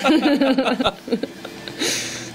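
A person laughing for about a second, then a quieter stretch with a faint steady hum and a short hiss near the end.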